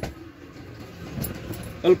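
Faint background voices over low room noise, with a brief click at the start.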